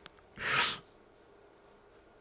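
A man's single short, breathy huff of breath close to the microphone, about half a second in, a laughing exhale at himself.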